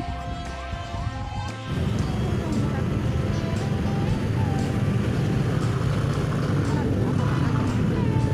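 Background music stops abruptly about a second and a half in. It gives way to the steady low rumble of idling and creeping motor-scooter and car engines in a slow traffic jam, heard from a motorcycle in the queue.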